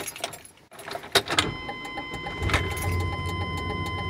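Ignition keys jangling, then the 1995 Chevrolet Suburban K1500's engine starts about a second and a half in and settles into a steady idle, with a thin high steady whine over it.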